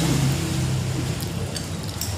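Steady low engine hum, with a few light clicks of a spoon against a bowl in the second half.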